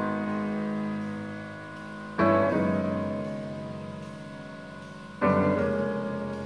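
Slow solo piano chords, a new chord struck about every three seconds and left to ring and fade away.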